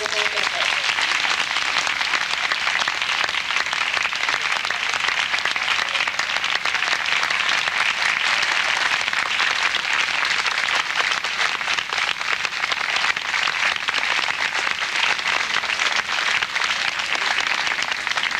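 A large crowd applauding: a long, steady round of clapping from many hands.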